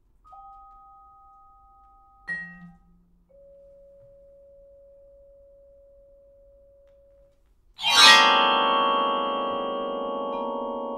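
Solo marimba played with mallets: a couple of soft held notes, a sharp accented stroke about two seconds in, a single long held note, then a loud, dense chord struck near the end that rings on.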